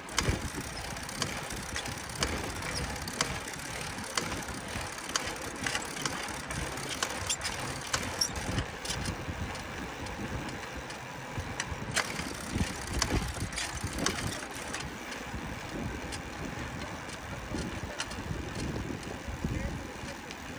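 Bicycle riding along a road, heard from a handlebar-mounted camera: wind rumble on the microphone with frequent small clicks and knocks from the bike.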